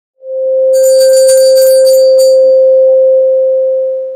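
Intro sound: a loud, steady, bell-like tone held for about four seconds, with a glittering high shimmer of chime-like strokes over its first couple of seconds. It starts to fade near the end.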